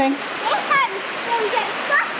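A steady rushing hiss, with a few short snatches of a voice over it.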